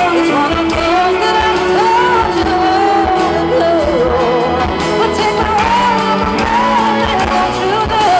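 Live rock performance: a female lead vocalist singing long, bending lines over acoustic guitar and band, heard in a large concert hall.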